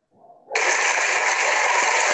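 Applause that starts abruptly about half a second in, a loud, even clapping noise heard through a video-call audio feed.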